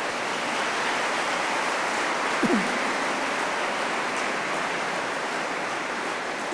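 A large congregation applauding steadily: a dense, even wash of many hands with no single claps standing out.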